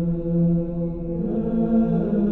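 Background music of slow, sustained chanted voices holding long notes, with a higher note joining about a second in.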